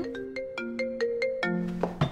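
Smartphone ringtone for an incoming call, playing a melody of short notes that step up and down in pitch.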